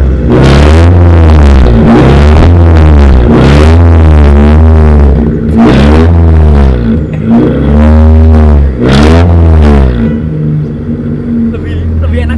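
Car engine revved about seven times in quick succession, then settling toward idle near the end, through a homemade exhaust of a garden water hose with the bamboo tip taken off. The sound is loud and very open, with a stronger 'brr' than with the bamboo, which acts like a baffle.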